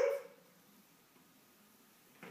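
A child's short excited "ooh", rising in pitch, right at the start.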